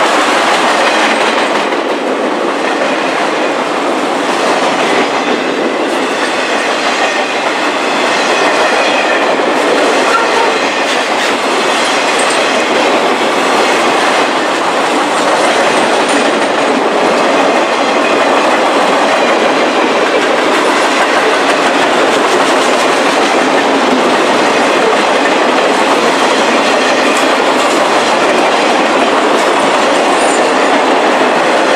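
Norfolk Southern maintenance-of-way train's flatcars, loaded with track machines, rolling past close by at speed: a steady, loud noise of steel wheels running on the rails.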